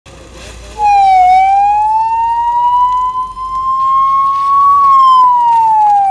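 Ambulance siren wailing, starting about a second in. It gives one long tone that dips briefly, climbs slowly, then falls again near the end.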